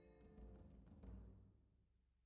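Near silence, with two faint low bumps about half a second and a second in.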